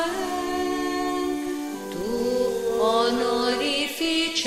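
Slow unaccompanied singing of a sacred chant or hymn: voices holding long notes, with a new phrase sliding in about halfway through.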